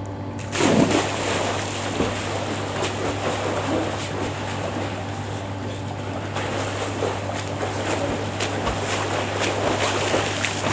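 A person diving into a swimming pool: a loud splash about half a second in, followed by water churning and splashing as he swims with his arms. A steady low hum runs underneath throughout.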